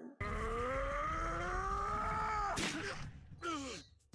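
A long pained groan from an anime fight soundtrack: one drawn-out voice that rises and then sinks over about two and a half seconds above a low rumble. It is cut off by a sharp hit, with a short falling cry after it.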